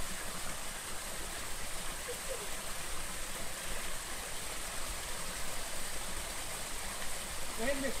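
Steady rushing and splashing of a small waterfall spilling over rocks into a stream pool. A few faint voices break in briefly about two seconds in and again near the end.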